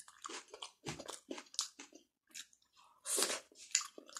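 A person chewing a mouthful of rice and curry, with wet mouth sounds in an irregular series of short bursts, a brief pause about halfway, and a louder cluster a little after three seconds in.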